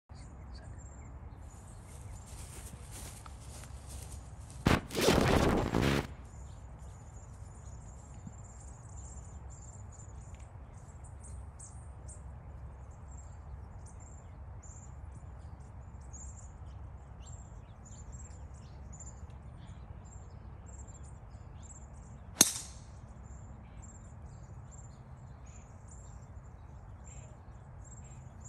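A single sharp crack of a driver striking a golf ball about two-thirds of the way through, the loudest sound, with a brief ring after it. Small birds chirp steadily in the background, and a second-long rush of noise comes about five seconds in.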